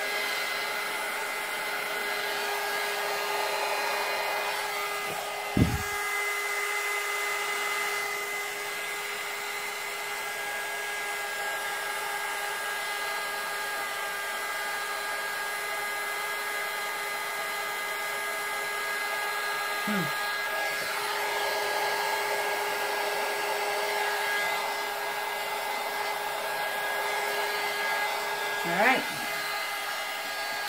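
Handheld heat gun blowing steadily over wet epoxy resin, with a constant hum under the rush of air. There is a sharp knock about five seconds in and a smaller bump near the end.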